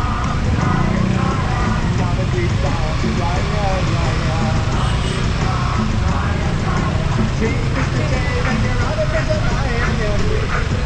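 Busy city-street traffic: cars, a van and motorcycles running in slow stop-and-go traffic, a steady low rumble, with voices over it.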